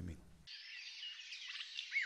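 Faint birds chirping and twittering, starting about half a second in, with a run of quick repeated chirps near the end.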